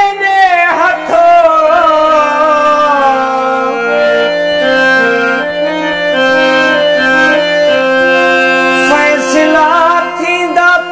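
A male voice ends a long, falling sung note in the first second, then a harmonium plays a melody of held, stepping notes over a steady low drone. Singing starts again at the very end.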